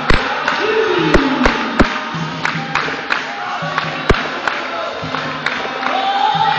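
Capoeira roda music: a group singing in chorus over steady pitched accompaniment, cut by sharp percussive strikes at irregular moments, the loudest just after the start and about four seconds in.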